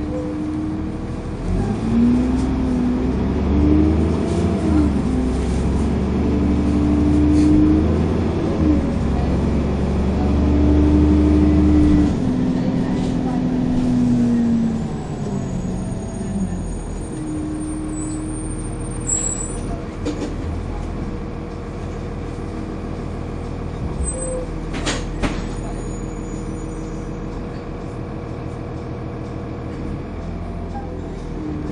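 Dennis Trident 2 double-decker bus's diesel engine heard from inside the saloon, pulling hard with its pitch climbing and dropping back through several gear changes over the first half. It then eases to a steadier, quieter run, with a sharp knock near the end.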